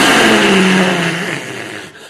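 Loud, close hissing from a person acting out a vampire, with a low growl of voice under it, fading away near the end.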